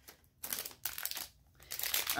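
Crinkly plastic toy packaging being handled and unwrapped: a run of crinkling rustles that starts about half a second in, with a short pause in the middle.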